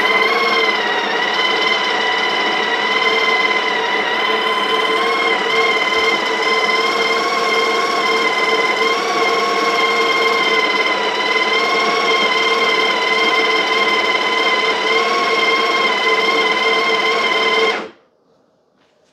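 Breville Barista Express's built-in conical burr grinder running steadily, grinding beans into the portafilter, with an even motor whine. It is grinding a larger dose at a finer setting and cuts off abruptly near the end.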